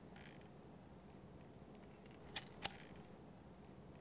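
Open-end steel wrench working a brass gauge adapter tight on a pressure gauge: two light metal clicks about a quarter second apart a little past halfway, after a faint handling rustle near the start, otherwise near silence.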